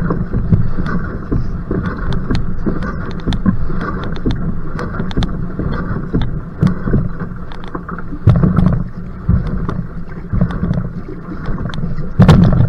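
Single-blade paddle strokes pulling and splashing through the water beside a va'a (outrigger canoe) during a hard sprint, with wind rumbling on the microphone.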